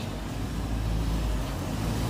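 A car engine running at low speed close by on the street, a steady low rumble under street noise.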